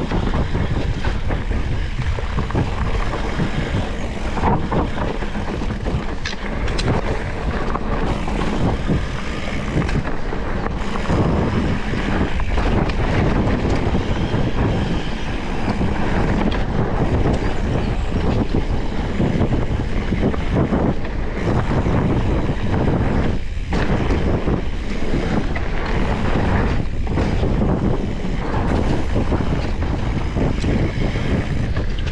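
Wind buffeting an action camera's microphone over the tyre noise of a Specialized Turbo Levo electric mountain bike rolling fast on a dirt forest trail, with occasional knocks and rattles from the bike over bumps.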